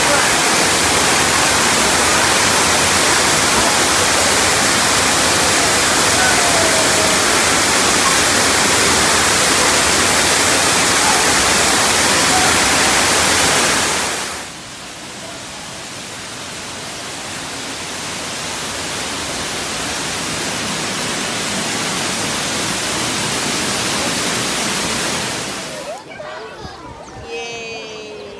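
An artificial pool waterfall pours heavily into the water with a dense, steady rush. About halfway through the rush drops suddenly to a quieter level, then slowly grows louder again.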